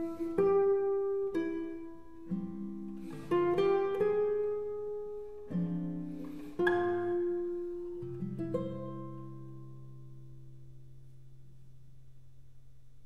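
Classical guitar playing the slow closing bars of a piece: a short run of single plucked notes and chords. The final low chord near the end rings and dies away.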